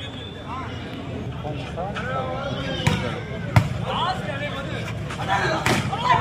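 A volleyball struck sharply twice, about three and three and a half seconds in, the second hit the louder, over scattered shouts and calls from the crowd and players.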